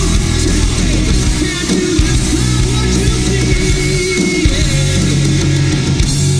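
Hard rock band playing live: distorted electric guitars, bass and a drum kit, loud and steady, with no break.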